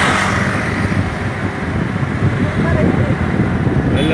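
Steady low road and engine rumble of a moving vehicle in traffic. Another car passes close by right at the start, a brief rush that fades within about half a second.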